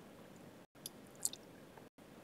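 Near silence: faint room tone with a few soft, short clicks about a second in.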